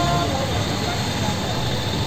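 Steady street noise of vehicle engines running as traffic passes, with a snatch of voice or music cutting off just after the start.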